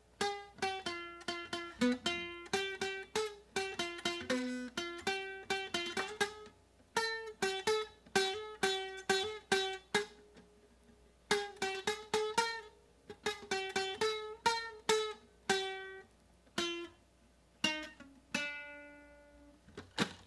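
Mustang classic nylon-string guitar with a broken bridge, picked one note at a time, mostly repeating the same pitch with a few other notes, in short phrases with pauses. Near the end a single note is left to ring out.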